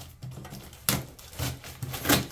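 A knife slitting packing tape on a cardboard box, with a few short, sharp tearing and scraping sounds of tape and cardboard. The loudest comes about a second in.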